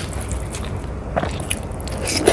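Close-miked eating by hand: wet chewing and lip smacks, with a few short squishes of fingers working rice and paneer curry on a plate, over a steady low hum.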